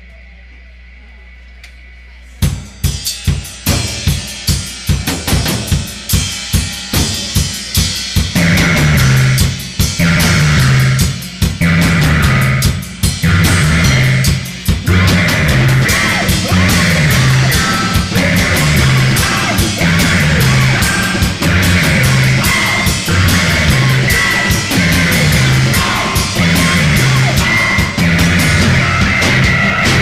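Live rock band opening its first song: after a couple of seconds of low hum, a drum kit starts alone on a steady beat, and the rest of the band comes in over it about eight seconds in.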